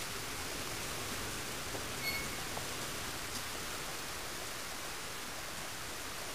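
Steady, even hiss of background noise, with a short high chirp about two seconds in.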